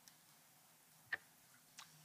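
Near silence with a single short click about halfway through, typical of a microphone being switched on.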